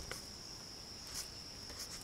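Crickets trilling steadily at one high pitch, with a faint brief rustle about a second in.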